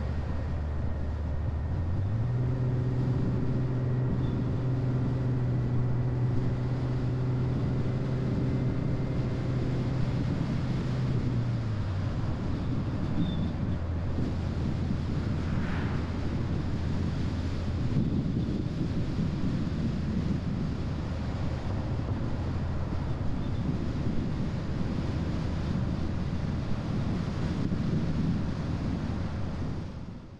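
A car driving on a paved road: steady tyre and wind noise under a low engine hum. The engine note rises in pitch about two seconds in, holds, and drops back about twelve seconds in.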